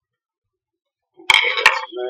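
A screwdriver set down on a wooden tabletop, about a second and a quarter in: two sharp clacks about a third of a second apart, with a short clatter between them and a thin high tone lingering after.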